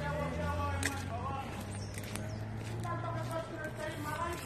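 Faint, indistinct voices of people talking at a distance, over a steady low hum, with a few light clicks.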